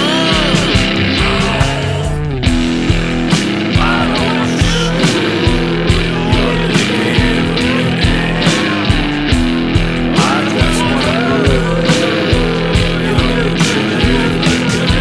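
Instrumental passage of a psychedelic rock song with no vocals: an electric guitar lead with bending notes over a sustained bass and a steady drum beat, broken by a brief falling break about two seconds in.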